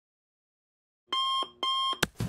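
Digital alarm clock beeping: two short electronic beeps about a second in.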